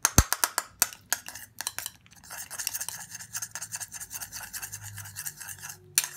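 A metal spoon clinking several times against a small bowl, then stirring a thick petroleum jelly mixture with rapid scraping strokes against the bowl for a few seconds.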